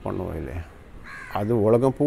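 A crow cawing in the background, harsh calls heard around a second in.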